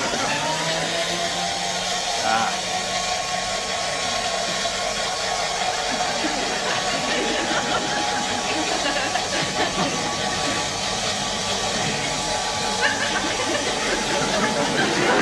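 Spindle milkshake mixer's motor running with a steel cup of milkshake on it: it starts up, its whine dips slightly in pitch as it settles, then holds steady with a hiss.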